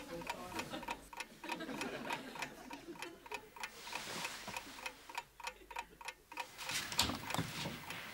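A clock ticking steadily, several even ticks a second, in a quiet bedroom, with faint rustling of bedding early on.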